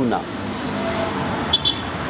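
Steady city traffic noise behind a pause in an outdoor conversation, with a brief high beep about one and a half seconds in.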